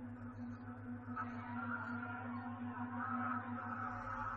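Eerie ambient drone from the creepy video's soundtrack: a steady low hum with a pulsing tone above it, and faint wavering higher tones that come in about a second in.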